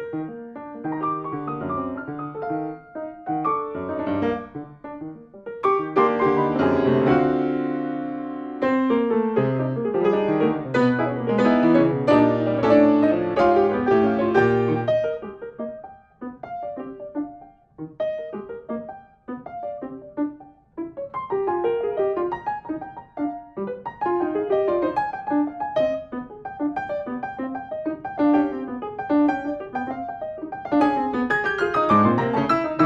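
Fazioli grand piano being played: dense, loud chords for several seconds, a softer, sparser passage about halfway through, then quick repeated figures.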